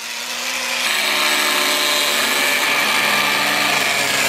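Corded angle grinder with a cutoff wheel cutting through the Jeep Cherokee's front sheet metal: a continuous high whine, a little louder after about a second.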